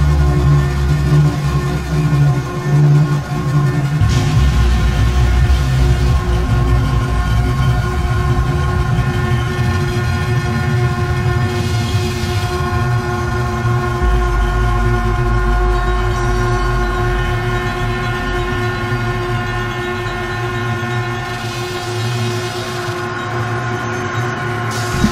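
Dark electronic drone music: a dense wall of held, layered synthesizer tones over a deep bass, with the bass changing a few seconds in and again a little past halfway.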